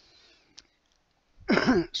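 A man clears his throat once, briefly and loudly, about one and a half seconds in, after a soft breath and a small click in an otherwise near-silent pause.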